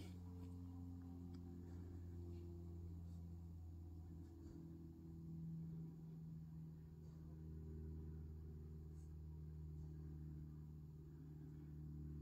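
Near silence: quiet room tone with a faint steady low hum and a few very faint ticks.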